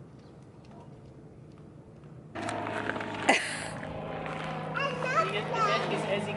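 Faint outdoor ambience, then a sudden switch a little over two seconds in to a toddler playing and vocalising on a backyard trampoline. A sharp knock comes about a second after the switch, and a steady low hum runs underneath.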